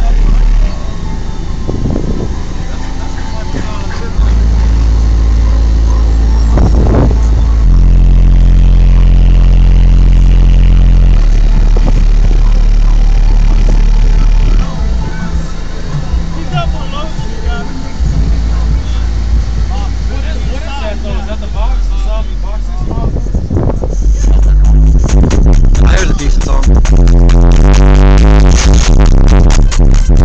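Car-audio system with four FU Audio 750-watt-RMS 12-inch subwoofers wired to a 1-ohm load, playing a bass-heavy song very loud inside the vehicle. Long held low bass notes shift pitch every few seconds, and the music is densest in the last six seconds.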